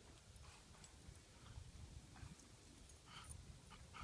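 Near silence with faint sounds of dogs moving about on grass and sniffing one another: a few soft clicks and scuffs, a small cluster near the end.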